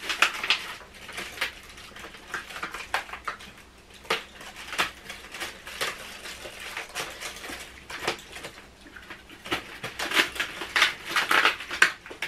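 Cardboard advent calendars being torn open by hand, with the chocolates popped out: a run of irregular crackling, tearing and clicking of card and packaging.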